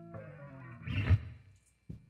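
Guitars playing the song's final notes: a few notes, then one last chord struck about a second in that dies away quickly, followed by a short click near the end.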